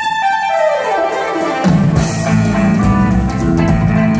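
Progressive rock band playing live, with violin, electric guitars, drums and keyboards. In the first second and a half the bass and drums drop out while a melodic line runs downward in pitch, then the full band comes back in with drums and bass.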